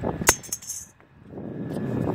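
A single sharp click with a short high-pitched ring after it, then a steady outdoor background noise that rises towards the end.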